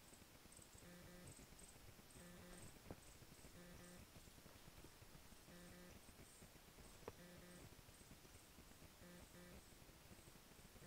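Near silence: quiet ambience with faint soft sounds repeating about once a second and two light clicks, about three and seven seconds in.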